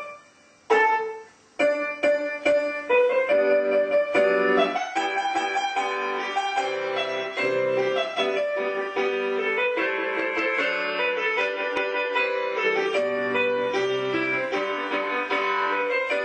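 Solo piano playing ballet-class accompaniment for frappés at the barre: two separate chords struck in the first second and a half, then continuous rhythmic playing.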